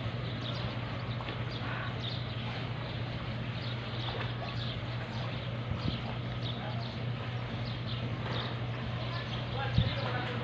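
Water splashing from a person swimming in a pool, with many small splashes, over a steady low hum. There is a single sharp knock near the end.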